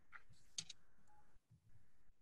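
Near silence on a video-call audio line, with a few faint clicks in the first second and a brief faint tone near the middle.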